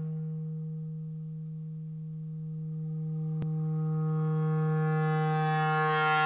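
A clarinet holding one long low note, dipping slightly in loudness and then swelling louder and brighter toward the end.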